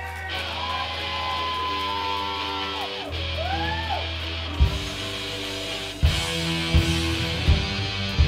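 Punk rock band playing live: electric guitar notes sliding and bending over a held bass note, then drums come in with hard hits a little past halfway as the full band starts up.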